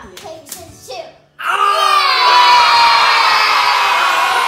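A few sharp claps and bits of excited voices, then about a second and a half in a sudden loud, long shriek from several voices, held for over two seconds with its pitch sagging slightly.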